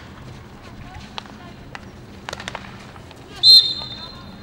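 A few sharp clicks of field hockey sticks on the ball, then a short, loud, shrill blast of an umpire's whistle about three and a half seconds in.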